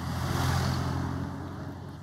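A road vehicle driving past, its engine rumble and tyre noise swelling to a peak about half a second in and then slowly fading.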